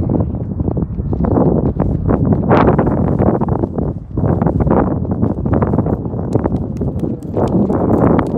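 Loud rumbling noise that swells and dips unevenly, with a few sharp clicks near the end.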